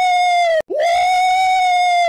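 A man's high-pitched sustained vocal wail, held on one steady note. It cuts off abruptly about half a second in and then starts again as an identical repeat, rising into the same note and holding through the rest.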